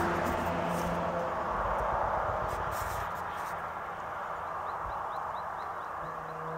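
Steady outdoor background noise with an uneven low rumble. About halfway through, a faint series of short rising high chirps begins, about three a second.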